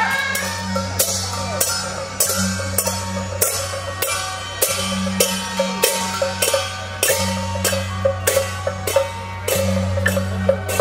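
Temple-procession percussion: drum and cymbal strikes at an even beat, a bit under two a second, with lighter knocks between them and a steady low hum underneath.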